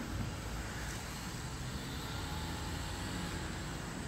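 Steady low rumble of outdoor background noise, with no distinct events.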